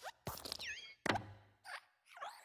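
Animated desk lamp hopping: springy metal squeaks and landing thuds, the loudest thud about a second in as it squashes the letter beneath it.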